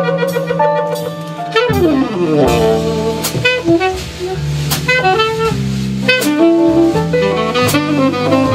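Live jazz quartet playing: tenor saxophone over piano, upright double bass and drum kit. A quick falling run of notes comes a little before two seconds in, after which a deep walking bass enters, and sharp cymbal-like strikes fall about every second and a half.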